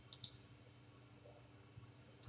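A single computer mouse click about a quarter second in, pressing the Save button; otherwise near silence.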